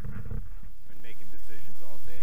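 Low rumble of wind on the microphone, then about a second in a person's voice starts, wordless or unclear, and carries on.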